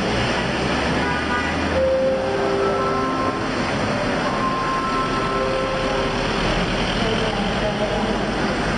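Steady vehicle noise, with a bus engine running, under the chatter and calls of a crowd of people.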